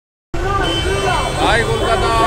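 Busy city street at night: a steady rumble of traffic and crowd under overlapping voices, starting suddenly about a third of a second in.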